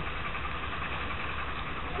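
Small outboard motor on a yacht's stern running steadily, under a constant rush of wind and sea noise.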